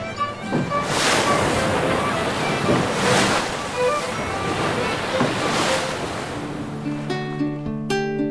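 Rough sea surf with wind, surging and falling away about three times. Near the end a plucked guitar tune takes over.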